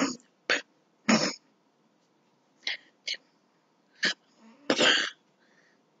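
A person's short, breathy vocal sounds, about seven brief bursts spaced over a few seconds, like coughs or throat clearing.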